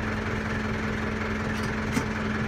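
Massey Ferguson 573 tractor's diesel engine idling steadily, heard from inside the cab as an even hum with one constant tone. A few faint clicks come near the end.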